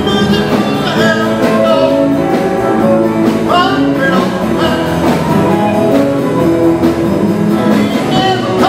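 Live band playing an up-tempo rock-and-roll song, with a singer over the instruments and a steady beat.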